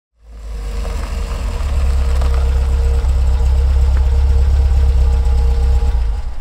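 Heavy truck's diesel engine idling with a steady low rumble, swelling in over the first second.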